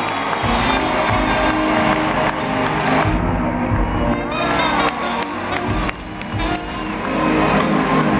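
A live R&B band plays sustained chords in a large arena while the crowd cheers.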